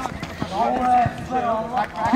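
Men's voices talking and calling out, with a sharp thud right at the start and another about half a second in, typical of a football being struck during a five-a-side game.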